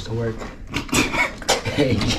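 Background music fading early on, then indistinct talk with a few sharp knocks and rattles from the wooden bed frame being taken apart.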